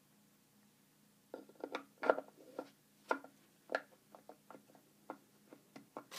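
Irregular plastic clicks and knocks, about a dozen, some with a brief ring, as a blue plastic piece is pressed and worked into a slot in the metal base of a Zortrax M200 3D printer. They start about a second in.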